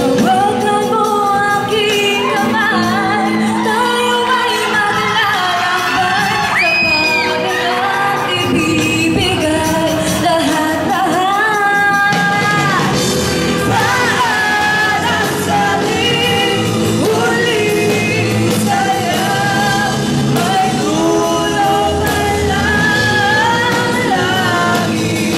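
Live rock band playing: a woman sings the lead melody, with long held notes around a quarter and half of the way in, over electric guitars, bass guitar and a drum kit, with the echo of a large hall.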